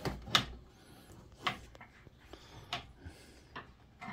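Several knocks and clunks from handling a wooden pinball cabinet and its playfield, about five spread over four seconds, the one shortly after the start the loudest.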